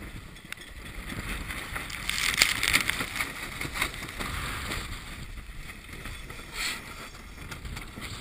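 Wind buffeting the microphone and water rushing along the hull of a small sailboat heeling in rough water. There is a louder surge of rushing noise about two seconds in and a shorter one near seven seconds.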